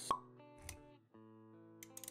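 Intro music with sound effects: a sharp pop just after the start, held musical notes, and a low thud a little past half a second. The music drops out briefly around one second, then the held notes come back with a few light clicks near the end.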